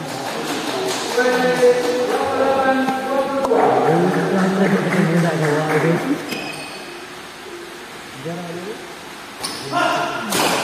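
Voices calling and shouting in a large echoing hall, with a few sharp racket strikes on a shuttlecock during a badminton rally.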